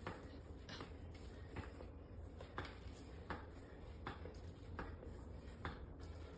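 Hydraulic mini stepper working under steady stepping: a faint, regular click or knock from the pedals with each step, a little more than one a second, over a low steady hum.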